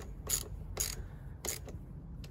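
Ratchet wrench clicking as it tightens a car battery's terminal clamp: three sharp clicks under a second apart, with a few fainter ones.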